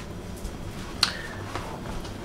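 A single sharp click about a second in, over faint room tone.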